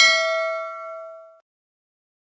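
Notification-bell ding sound effect from a subscribe-button animation, triggered as the cursor clicks the bell: a single struck chime that rings and fades out within about a second and a half.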